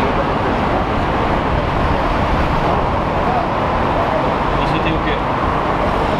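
Steady road traffic noise from a busy multi-lane highway, with voices talking under it.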